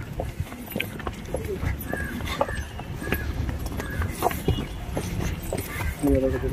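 Horse hooves clip-clopping on hard ground in an irregular patter, with faint voices of people in the background.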